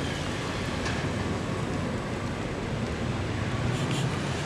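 Steady low rumble and hiss of outdoor background noise, with no distinct event.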